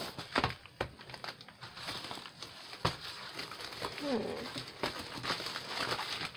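Crinkling of a clear plastic-sleeved stamp set and its paper packing being handled and unwrapped, with several sharp crackles among the rustling.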